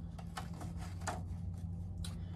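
Faint rustle and a few light ticks of a sheet of paper held against a window frame and marked with a pen, over a steady low hum.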